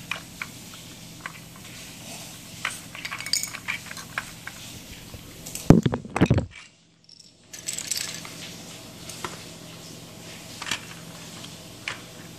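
Plastic toy building bricks clicking and clattering lightly as pieces are handled and pressed together, in scattered small clicks. About six seconds in comes a louder knock and handling noise, and the sound drops out for about a second.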